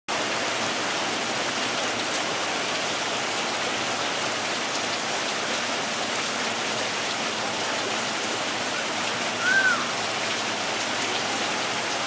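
Steady rain falling on a wet street, an even hiss throughout, with one brief chirp about three-quarters of the way through.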